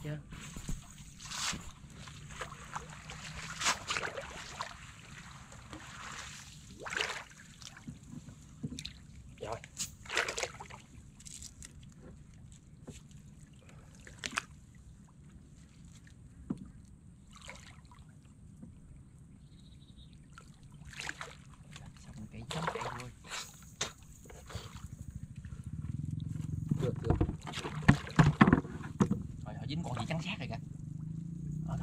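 Water splashing and dripping as a gill net is hauled hand over hand into a wooden canoe, with irregular short splashes and knocks throughout. The splashing gets louder and fuller near the end.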